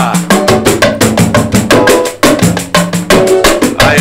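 Live samba-pagode percussion: hand drums and small percussion played in a fast, steady samba rhythm. A short shout comes near the end.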